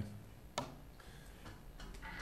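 A single sharp click about half a second in, then a few faint ticks, over low room noise.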